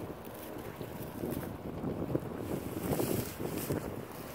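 Wind buffeting the phone's microphone: a steady low rumble.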